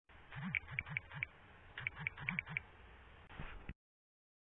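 Keyboard typing sound effect: two quick runs of key clicks, about four and then five or six, followed by a short click-like burst near the end.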